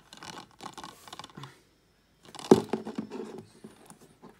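Plastic Blu-ray case being handled: scraping and rubbing against fingers and cardboard, with a sharp plastic clack about two and a half seconds in.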